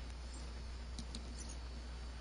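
A low, steady hum with a few faint, high clicks about a second in.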